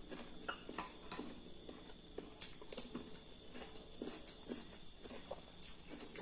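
Eating sounds: a metal spoon clicking against a ceramic bowl of instant noodles several times, with soft chewing in between. A steady high-pitched hum runs underneath.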